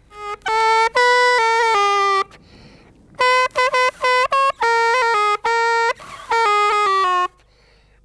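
Handmade shepherd's pipe (gaita de pastor or flauta de capolla) of pine wood with a bull-horn bell, sounded through a double reed cut from bull-horn slivers. It plays two short phrases of bright, buzzy notes moving by small steps within a narrow range, with a brief break between them.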